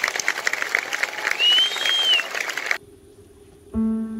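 Audience applauding, with one whistle rising and falling in the middle; the clapping cuts off suddenly about three quarters in. A grand piano begins playing soft sustained notes near the end.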